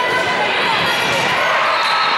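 Echoing hubbub of players' calls and spectator voices in a gymnasium during a volleyball rally, with the smack of the ball being struck near the end.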